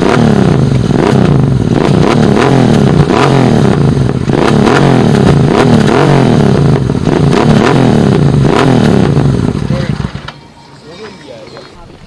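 Motorcycle engine being revved over and over, its pitch rising and falling about once a second, loud, until it cuts off suddenly about ten seconds in.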